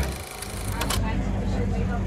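A brief hissing, rattling film-reel transition effect over the first second. It gives way to steady outdoor background noise with faint voices of people around.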